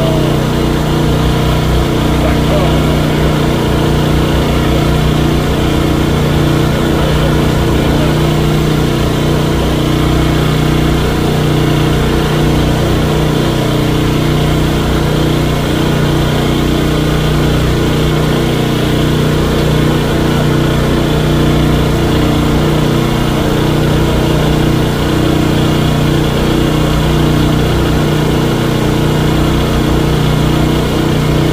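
A portable generator's engine running steadily at a constant speed, with a continuous low hum.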